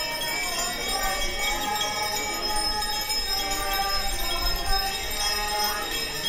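Small hand bells ringing steadily without a break, the altar servers' bells carried in a Corpus Christi procession, with the voices of the walking crowd beneath them.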